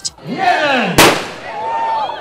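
A starting pistol fires once about a second in, the loudest sound, signalling the start of the run. Several voices shout before and after the shot.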